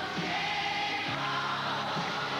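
A child pop duo singing live over backing music, their voices held on long sung notes.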